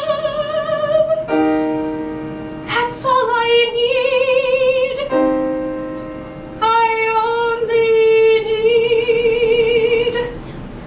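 Soprano voice singing a slow musical-theatre ballad with piano accompaniment: three long held notes with wide vibrato, the last and longest from about two thirds of the way in, with sustained piano chords sounding in the gaps between the sung phrases.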